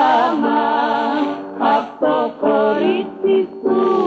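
Recorded Greek popular song: a singing voice over instrumental accompaniment, the melody broken into short phrases.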